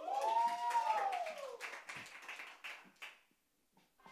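Scattered audience clapping, with a drawn-out whoop from a voice that rises and falls in pitch over the first second and a half. The claps thin out and die away to near quiet shortly before the end.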